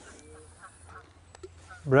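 Mostly quiet outdoor background with a faint, short pitched call a quarter of a second in and a couple of tiny clicks later on; a man's voice starts near the end.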